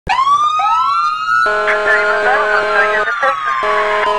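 Police sirens winding up, a second one rising just after the first, then holding and slowly falling in pitch. About a second and a half in, a steady lower horn-like tone joins them.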